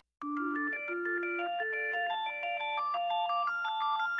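Loud music stops abruptly, and after a brief gap a quiet, ringtone-like melody of short, clean synthesizer notes begins, stepping up and down in pitch, as the next track in a hip hop mix starts.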